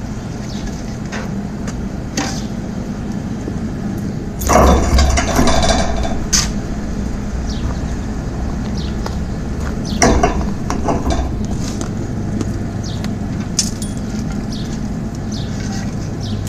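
Coke forge with its air blower running as a steady low hum. A metal poker works the burning coke in the firepot, scraping and clinking, loudest about four to six seconds in and again around ten seconds in.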